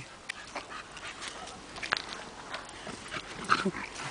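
A German Shepherd and a Staffordshire Bull Terrier playing and digging in a sand pit: faint scattered scuffs and clicks of paws in sand, with a short dog vocal sound near the end.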